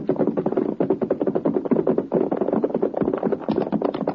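Radio-drama sound effect of horses galloping: rapid, steady hoofbeats, with music underneath.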